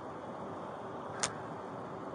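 Steady outdoor background noise, with one short sharp click just past the middle.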